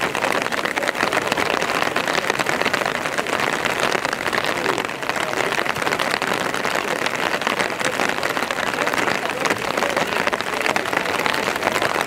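Open-air ambience at a football pitch: a steady, dense crackling hiss, with players' voices on the field.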